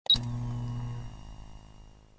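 Intro sound effect: a sharp, bright hit followed by a low sustained tone that fades out over about two seconds.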